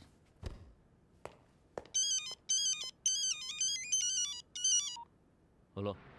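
A few sharp clicks, then an electronic telephone ringtone plays a melody of short beeping notes that step up and down. It comes in four phrases and stops about five seconds in.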